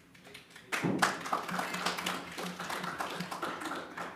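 Audience applause, a crowd clapping that breaks out suddenly about a second in and carries on steadily.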